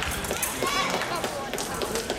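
Épée fencing bout: several sharp clicks and knocks from blade contact and fencers' footwork on the piste, over background voices in a busy sports hall.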